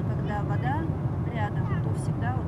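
Steady low rumble of a Boeing airliner's cabin at cruise, from the engines and the airflow, with indistinct voices talking over it.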